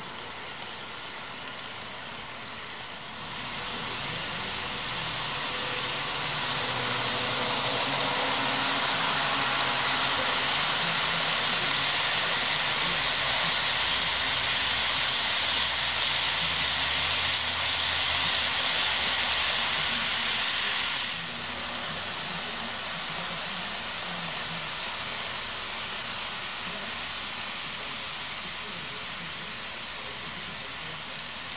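HO scale model freight train rolling past on the track: a steady noise of the car wheels on the rails, with the hum of the locomotive motors. It grows louder a few seconds in and drops off suddenly about two-thirds of the way through.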